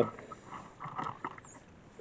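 Camera being shifted by hand on a wooden table: faint scrapes, rustles and light knocks.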